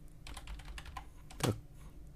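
Computer keyboard being typed on: a quick run of keystroke clicks in the first second, then a pause.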